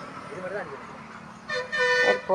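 A vehicle horn sounds a loud, steady note starting about one and a half seconds in.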